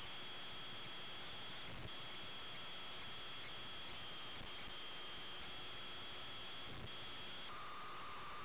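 Steady hiss of an open aviation radio frequency between air traffic control transmissions, with a faint high steady tone that breaks off now and then, and a second, lower tone that starts near the end.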